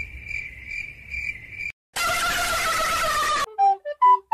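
Cricket chirping sound effect, the comedy cue for an awkward silence: a steady high trill with regular pulses for about the first two seconds. Then a loud rushing noise with a slowly falling tone lasts about a second and a half, and a flute melody starts just before the end.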